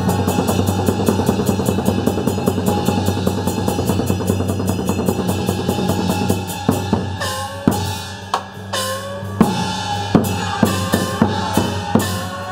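Traditional Chinese opera-style percussion of drums, cymbals and gongs. A fast, dense drum-and-cymbal rhythm runs for about the first half. Then come about a dozen separate strikes, several with a ringing gong tone that falls in pitch.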